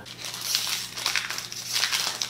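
Foil Pokémon booster-pack wrapper crinkling and crackling as it is handled in the hands, a dense run of fine crackles throughout.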